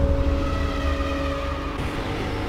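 Cinematic logo sting sound effect: a deep low rumble with a few held steady tones, following an impact hit, easing off near the end.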